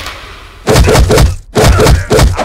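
Film fight-scene sound effects: a fast volley of heavy hits and thuds starting just over half a second in, a brief break, then more hits near the end.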